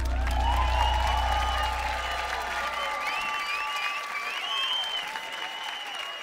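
Concert audience applauding, whistling and cheering, while the band's last low note rings on and fades out over the first three seconds.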